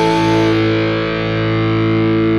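Punk rock band recording ending on a sustained, distorted electric guitar chord that rings steadily, its brightest overtones fading about half a second in.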